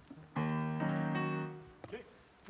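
Electric keyboard sounding a held chord, with further notes joining twice within about the first second, then fading out.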